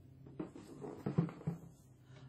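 Handling noises as hands move a vinyl reborn doll and small toys: a few light knocks and rustles over about a second and a half, over a faint steady hum.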